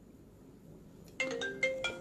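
Near silence, then about a second in a short electronic melody of quick stepped notes, several sounding together, like a device's ringtone.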